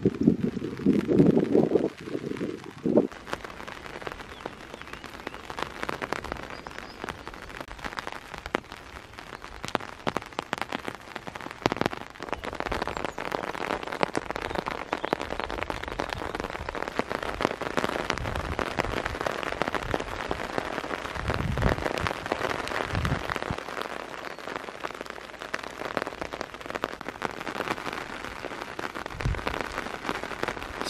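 Steady rain falling on grass, puddles and wet ground close to the microphone, a dense haze of small drop ticks. A louder low rumble in the first few seconds and a few dull thumps a little past the middle.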